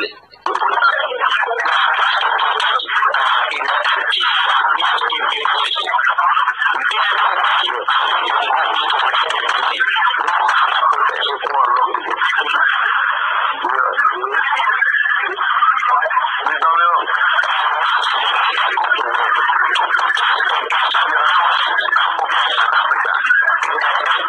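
Played-back recording of a conversation, the voices muffled, thin and noisy with no bass, so the words are hard to make out; a laugh is heard about two-thirds of the way in.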